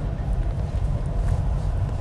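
Steady low rumble of a car on the move, heard from inside the cabin: engine and road noise.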